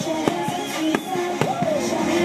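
Fireworks bursting in four or five sharp bangs, the loudest about one and a half seconds in, over music with held tones.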